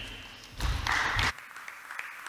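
Short applause from the council members, picked up by the lectern microphone for under a second before the microphone is cut off.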